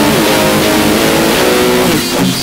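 Loud, heavily distorted noise-metal music: sustained electric-guitar chords under a dense wash of noise, with notes sliding in pitch.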